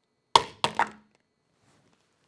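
A small lidded plastic container holding an egg, with no water or padding, dropped onto a lab benchtop: one sharp clack about a third of a second in, then two smaller knocks as it bounces and settles.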